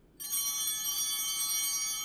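A bell chime struck once, about a fifth of a second in, ringing on with many high overtones and slowly fading.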